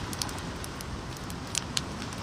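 Open fire crackling: a steady hiss with scattered sharp pops and clicks.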